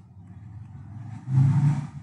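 A man's low, drawn-out vocal sound close to the microphone, without clear words, swelling louder about halfway through.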